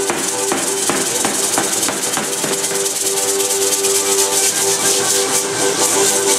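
Music for a danza de pluma, a zapateado, played with held melody notes over a regular beat, with a constant shaking rattle sound above it from the dancers' rattles.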